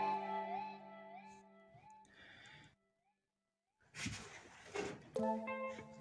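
Background music with sliding notes, fading out over the first two seconds. After about a second of near silence there is a short noisy rustle, and the music comes back in near the end.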